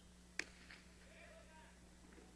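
A single sharp crack of the hard jai-alai ball (pelota) striking, about half a second in, followed shortly by a fainter knock, against an otherwise near-silent court.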